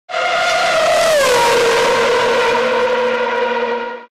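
Racing car engine at high revs. Its pitch drops about a second in, then holds steady and fades out near the end.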